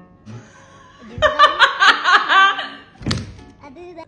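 A loud burst of laughter about a second in, lasting about a second and a half, over background music, followed by a single sharp thunk about three seconds in.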